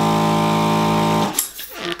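Electric balloon inflator's motor running with a steady hum as it fills a pink modelling balloon almost full, then switching off suddenly a little over a second in.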